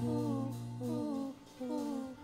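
Live band music: a short phrase that glides downward, repeated about every three quarters of a second, over a held low bass note that stops about a second in.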